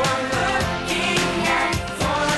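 A group of girls singing a song to instrumental accompaniment with a steady beat.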